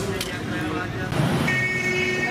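Background voices and forecourt noise, then a steady, high electronic tone sets in about one and a half seconds in and holds.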